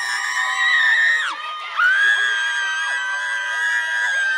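Excited, high-pitched screaming in celebration: one long held scream breaks off about a second in, and a second long scream starts shortly after and runs on. Other voices shout and cheer underneath.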